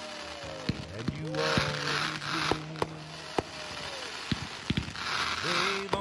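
A patriotic country song playing through a held sung note between lines, over fireworks going off: scattered sharp bangs and two stretches of crackle, one early and one near the end.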